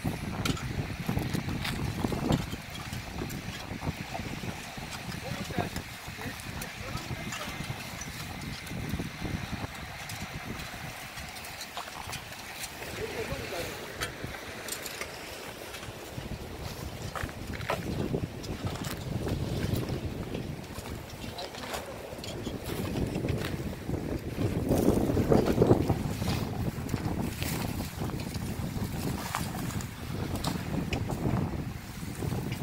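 Wind rumbling on the microphone over background chatter of people working, with scattered light knocks and clicks. The chatter grows louder a few seconds before the end.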